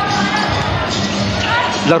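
Basketball dribbled on a hardwood court during live play, over steady arena noise.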